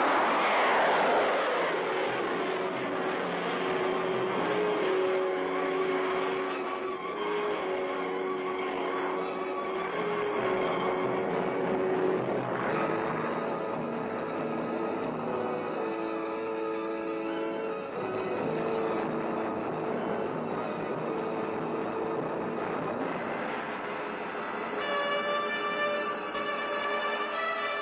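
Pershing missile's solid-fuel rocket motor rushing loudly just after launch, fading over the first couple of seconds. A steady rushing noise carries on under film-score music with long held notes.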